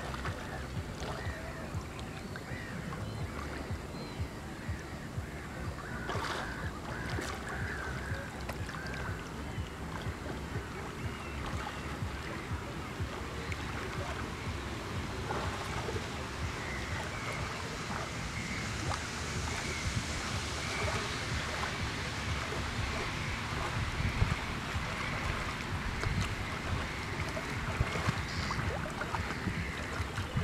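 Small waves lapping and washing against shoreline rocks close to the microphone, with wind buffeting the microphone.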